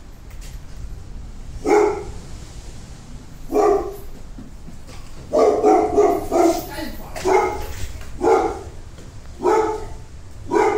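A dog barking repeatedly in short single barks, with a quick run of barks about halfway through.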